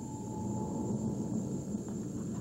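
A steady, low rushing hum of ambient sound design from a TV commercial's soundtrack, with a faint high held tone over it for the first second and a half.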